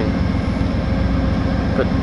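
Diesel locomotive of a VIA Rail passenger train idling close by: a steady low rumble with a faint steady hum above it.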